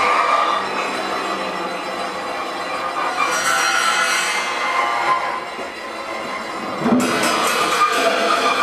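Improvised ensemble music with a dense, sustained, noisy texture. A hiss swells about three seconds in, the sound thins out a little later, and a sharp attack comes about a second before the end.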